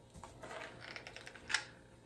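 Faint clicks and rustles of handling as a hot glue gun is picked up off a craft table, with one sharper click about one and a half seconds in.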